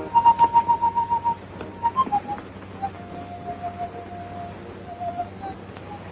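High whistle-like notes: a quick trill of about eight pulses a second near the start, a few short notes, then a longer, lower held note with a slight flutter, over a faint steady hum.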